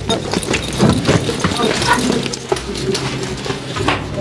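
Footsteps on the wooden treads of a stairway going down into a stone tomb shaft: a run of irregular knocks, with indistinct voices in the background.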